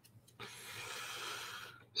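A man's breath close to the microphone, a soft breathy rush lasting just over a second that cuts off sharply.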